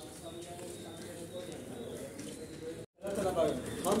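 Faint voices and outdoor background sound. The audio cuts out abruptly for a moment about three seconds in, at an edit, and is followed by louder voices.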